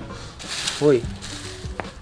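Dry leaf litter rustling briefly as a hand pushes into it, under quiet background music.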